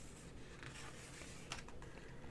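Faint rustle of a picture book's paper page being turned and pressed flat by hand, with a few soft clicks about one and a half seconds in.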